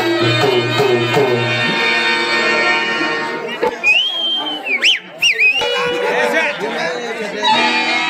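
Live stage-drama music: a harmonium holds a sustained chord over low drum beats for about the first two seconds. After that come high, wavering pitch slides and voices.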